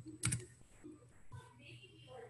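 A few light clicks of computer keys: a quick pair about a quarter second in and a fainter one about a second later, over faint room tone.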